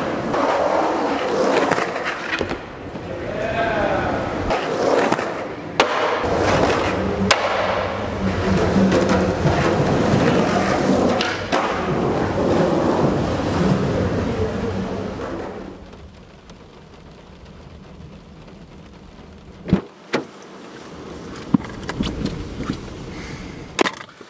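Skateboard wheels rolling on rough concrete, with sharp clacks of the board; the sound drops away much quieter for the last several seconds, leaving only a few isolated clicks.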